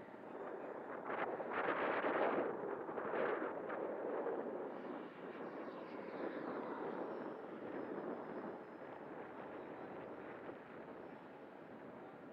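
FMS Futura 80mm electric ducted-fan jet making a high-speed pass: the rushing fan noise swells to its loudest about two seconds in, then fades slowly as the jet climbs away.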